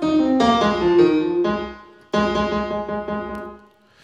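Simple software piano played from a MIDI keyboard: a short run of notes, then a chord about halfway through that rings and fades away. It is heard fully wet through the Verbotron reverb with only the early reflections turned up and no tail, which gives a small-space sound.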